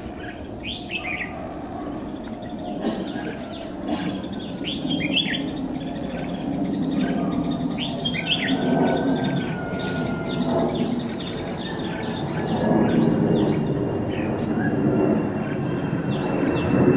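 Red-whiskered bulbuls calling in short clusters of quick chirps every few seconds, over a steady low rumble.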